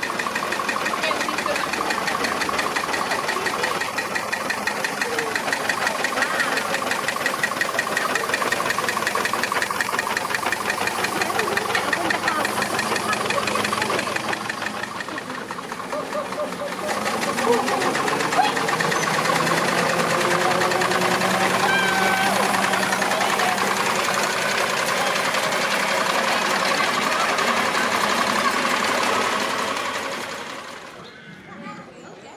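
Miniature steam wagon's engine running with a fast, even beat as it moves slowly along, with a brief drop in level about halfway through.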